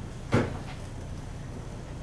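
A single sharp knock about a third of a second in, over a steady low room hum.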